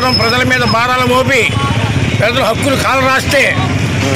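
A man speaking Telugu, with road traffic noise underneath.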